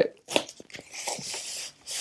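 White protective packaging wrap crinkling and rustling as it is pulled off the charging handle of a Tesla Wall Connector: a few short scratchy crackles and a longer rustle in the middle.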